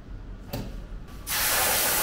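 A short knock, then a burst of hissing spray from an aerosol can about a second in, lasting to the end.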